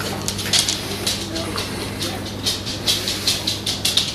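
Small dogs taking and eating crunchy treats: quick, irregular small clicks and crunches, over a steady low hum.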